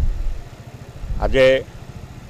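A man's voice saying a single word, over a low rumble.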